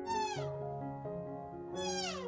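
Two short, high-pitched animal calls, each falling in pitch, one at the very start and one near the end, over background music with sustained notes.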